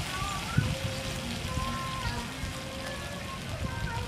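Chopped garlic frying in oil in a pan, a steady sizzle as sauce is poured in from a bottle, with a single knock about half a second in.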